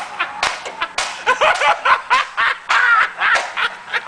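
High-pitched laughter with sharp clicks in between.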